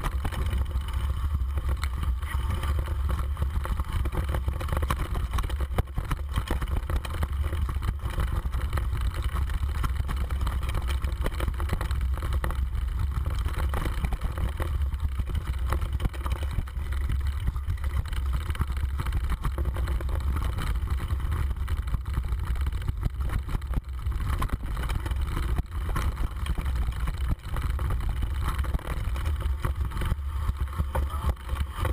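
Mountain bike rattling and clattering over a rocky dirt trail, heard from a camera mounted on the bike, with a steady low rumble of wind buffeting the microphone. Small knocks come thick and fast throughout.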